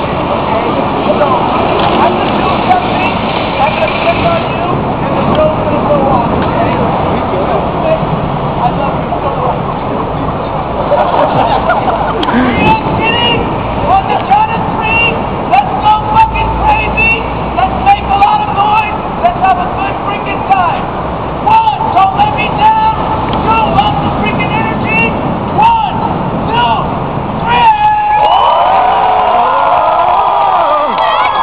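Crowd of street onlookers chattering and calling out over the steady hum of city traffic, with the crowd breaking into cheers about two seconds before the end.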